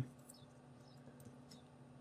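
Near silence: faint room tone with a low steady hum and a few faint ticks.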